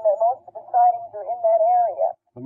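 Only speech: a voice on an old, narrow-band interview recording, muffled so the words can't be made out.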